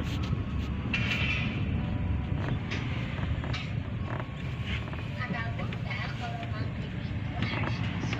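A car driving slowly, heard from inside the cabin as a steady low rumble, with indistinct voices over it.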